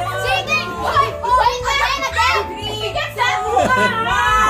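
Group of people shouting, calling out and laughing excitedly over background music with a repeating bass line.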